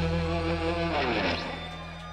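The final chord of a rock song on electric guitars and bass rings out and fades. About a second in, a downward slide in pitch sweeps through it.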